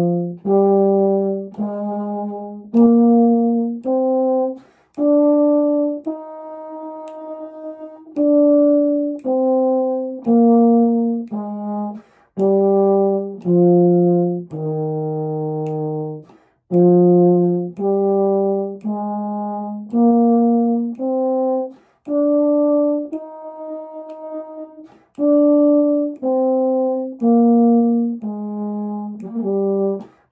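Euphonium playing a slow concert E-flat major scale, one octave up and down twice. Each note is held about a second, with a longer hold on the top note each time.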